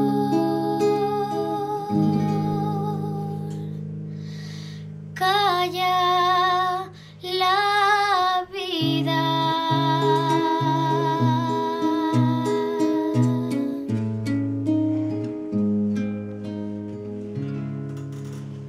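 Nylon-string classical guitar playing the closing plucked outro of a song, the notes ringing on and fading near the end. A wordless voice with vibrato sings two long held phrases over the guitar, starting about five seconds in.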